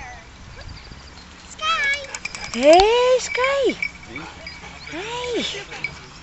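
Husky vocalising in drawn-out 'woo' calls: three pitched calls, each rising and then falling, the last one near the end, with a wavering higher whine before them.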